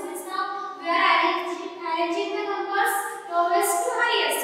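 A woman's voice speaking continuously, explaining a lesson.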